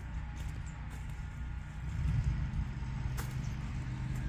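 A low engine rumble, as of a motor vehicle running nearby, growing louder with a steady hum about halfway through; a single sharp click sounds near the end.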